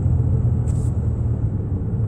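Steady low rumble of a Cadillac's engine and tyres, heard from inside the cabin while cruising slowly, with one brief soft hiss a little under a second in.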